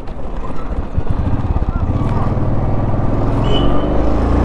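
Royal Enfield single-cylinder motorcycle engine running with a rapid low pulse as the bike pulls away and rides on. The note steadies and grows a little louder from about a second in.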